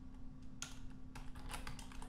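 Computer keyboard typing: an irregular run of keystrokes that starts about half a second in.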